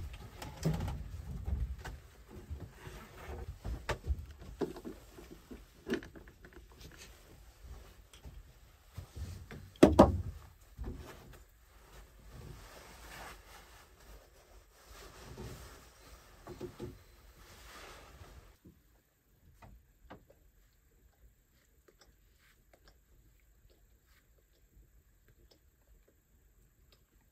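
Handling noises of people moving about inside a small wooden cabin: scattered knocks, thumps and rustling, with one loud thump about ten seconds in. They stop about two-thirds of the way through, leaving only faint clicks.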